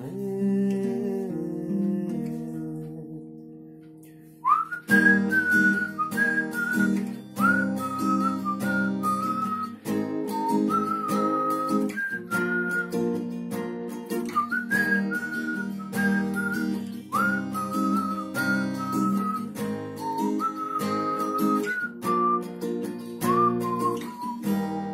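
Acoustic guitar with a capo on the third fret strummed in a C–Am–F–G chord progression; the chords ring softer and fade over the first few seconds. From about five seconds in, a person whistles a melody over the strumming.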